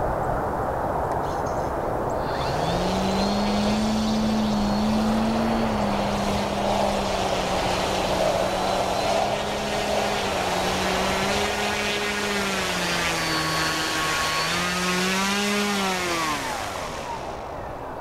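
Electric motor and propeller of a Graupner Husky 1800S foam model plane taxiing. A whine starts about two and a half seconds in, goes up and down in pitch with the throttle, then winds down and stops near the end, over a steady rushing noise.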